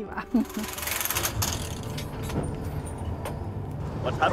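Railway track-laying machinery running: a steady engine rumble with a few sharp metallic knocks spread through it.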